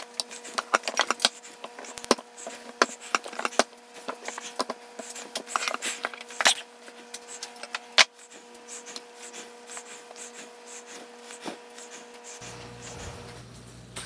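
A rolling pin rolling out pie dough on a countertop, with rapid clicks and rubbing, then a few louder knocks about halfway through. After that, the dough is handled and pressed into a glass pie dish, with scattered soft taps.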